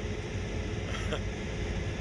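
Steady low drone of a Case IH 8250 combine running and harvesting wheat, heard from inside the cab.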